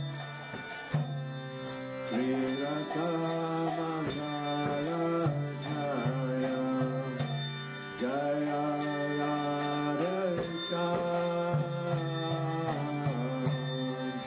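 Devotional kirtan: mantra singing over a steady sustained drone, with a brisk, regular high-pitched percussive ticking keeping the beat.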